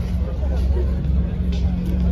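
Modified first-generation Acura NSX idling with a steady low exhaust hum.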